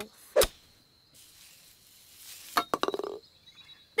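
Cartoon sound effects of a golf club striking a ball: a single sharp knock, then a short, fast rattle of clicks about two and a half seconds later.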